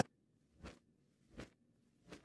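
Near quiet, broken by two faint, short noises about three quarters of a second apart.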